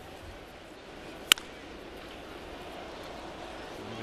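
Steady ballpark crowd murmur, with a single sharp pop just over a second in as a 65 mph knuckleball lands in the catcher's mitt for strike two.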